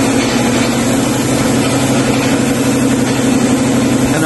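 Steady mechanical hum with an even hiss of air throughout, typical of a workshop air compressor running while a gravity-feed spray gun sprays primer onto plastic side skirts.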